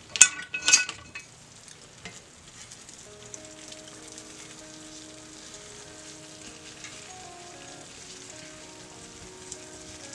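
Freshly baked casserole sizzling faintly and steadily in its hot dish, with two sharp clinks in the first second, like a utensil against the dish. Quiet background music comes in from about three seconds on.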